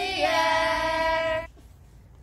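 A group of children and a woman singing together, holding a long final note that cuts off suddenly about a second and a half in.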